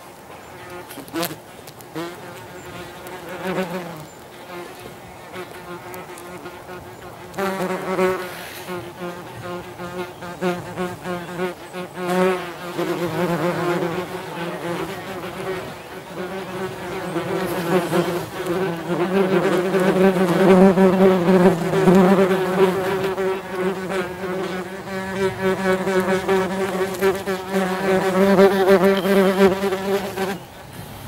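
Yellowjacket wasps buzzing in flight close to the microphone, a low droning hum whose pitch wavers as they move. It is faint at first, becomes much stronger about seven seconds in, and grows louder still in the second half.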